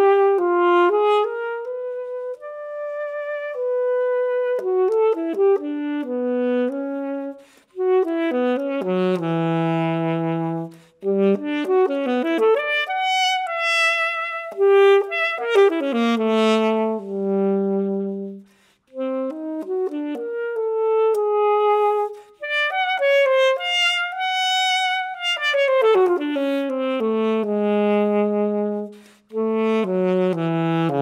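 Unaccompanied alto saxophone playing a free, improvisatory solo line: quick runs up and down between held notes, broken by several brief pauses.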